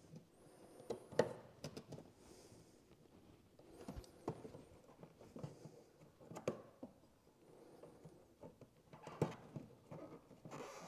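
Faint scratching and clicking of fingers working at a small metal ear-type (Oetiker) clamp on a rubber heater hose. A few sharper clicks come a couple of seconds apart.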